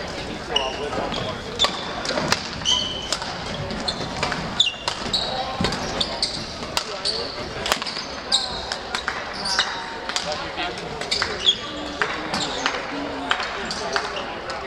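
Badminton rally on a hardwood gym floor: sharp racket strikes on the shuttlecock and short high squeaks of court shoes, with voices chattering around the hall.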